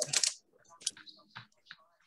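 A few short, faint clicks and taps of small objects being handled on a desk, scattered over about a second and a half.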